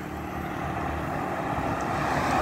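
Heavy cargo truck approaching along the highway, its engine and tyre noise growing steadily louder.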